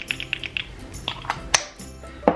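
Small plastic clicks from the pump of a NARS foundation bottle being handled and pressed: a quick run of light clicks at the start, then a few sharper single clicks, the loudest about three-quarters of the way through. Soft background music runs underneath.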